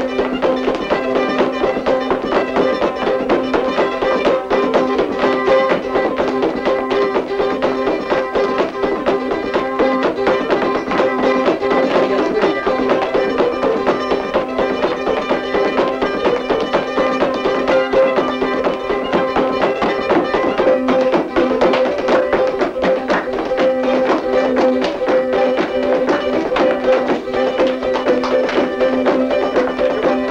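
A lively traditional jig tune played on a small plucked string instrument, with a steady run of quick, evenly paced notes.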